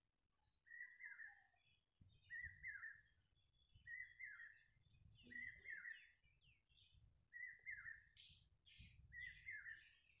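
A bird repeating one short chirping call over and over, about every one and a half seconds, faint in the background.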